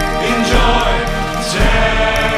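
Music: a song with choir-like singing over sustained chords, with a deep bass beat about once a second.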